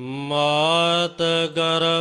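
Gurbani kirtan: a voice sings a shabad in long, drawn-out held notes, coming back in right at the start after a short pause and breaking off briefly twice.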